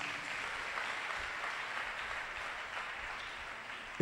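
Audience applause: a steady wash of hand clapping that sets in at once and slowly fades.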